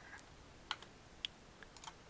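About half a dozen faint, scattered clicks from a computer's keys and mouse being worked at a desk, spread unevenly over two seconds.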